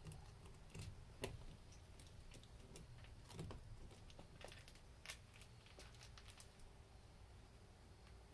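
Near silence, broken by a few faint, scattered clicks and soft rustles, the clearest about a second in and again about five seconds in.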